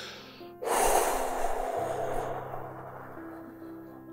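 Soft background music with steady held notes. About half a second in, a loud, breathy rush of noise starts suddenly and fades away over the next two to three seconds.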